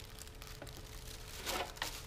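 Thin plastic bin-liner bag crinkling and rustling as it is handled and pulled up out of a litter disposal pail, louder about one and a half seconds in.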